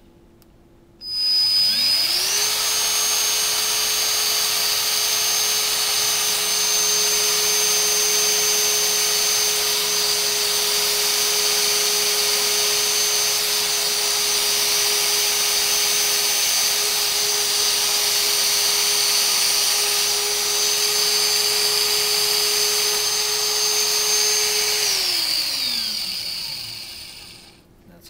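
Battery-powered American Power Tool Wedge SX1 tube swaging tool, running in tube-cutter mode at full torque, turning the tubing continuously against the cutter. Its motor whines up to speed about a second in, runs steadily for over twenty seconds, then winds down to a stop near the end.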